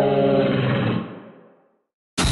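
A dinosaur roar sound effect: one long, pitched roar that fades away about a second in.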